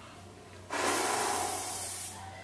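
Aerosol spray can released in one continuous hiss, starting abruptly about two-thirds of a second in and lasting to the end.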